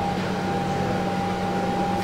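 Steady background hiss with a faint, even electrical hum.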